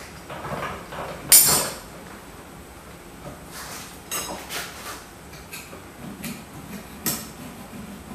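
Metal workshop clatter: an aluminum bench vise being worked and metal hand tools clinking on a cluttered workbench as a freshly deburred insert plate is taken out and a file picked up. One sharp ringing clank about a second and a half in is the loudest, followed by lighter clicks and clinks.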